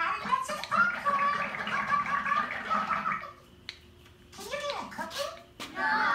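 A child's voice vocalizing without recognisable words, in a run of held, sing-song notes, then breaking off briefly and starting again near the end.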